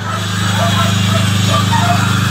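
Generator running with a steady low hum.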